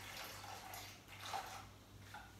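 Faint pouring and dripping of a liquid mixture from a small saucepan into a plastic bowl, with a couple of slightly louder splashes or scrapes partway through.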